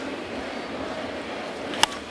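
Steady murmur of a ballpark crowd, then near the end a single sharp crack of a wooden baseball bat squarely hitting a fastball.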